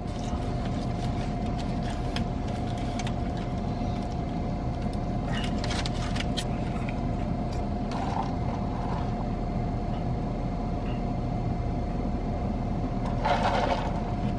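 Steady low hum in a parked car's cabin, with a faint steady whine over it. A few soft clicks and rustles come near the middle, and a brief louder noise near the end.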